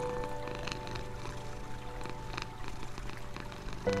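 A cat purring steadily, with held notes of calm music fading behind it; new music notes come in loudly just before the end.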